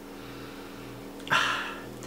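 A person sniffing deeply through the nose at a jar candle, one short hissy breath a little over a second in. A faint steady low hum sits underneath.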